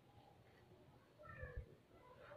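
A small animal's faint, short cry a little past halfway, falling in pitch, with a soft low knock at the same time.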